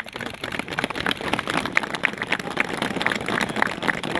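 A group of soldiers applauding. The clapping starts suddenly and builds over the first second into steady, dense clapping.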